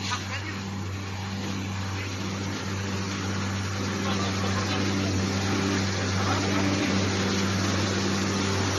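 Single facer corrugated cardboard line running: a steady low machine drone over an even rushing noise, slowly growing louder.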